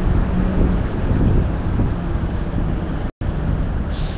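Steady low rumble of wind buffeting a handheld phone's microphone outdoors, with street traffic noise behind it. The sound cuts out for an instant about three seconds in.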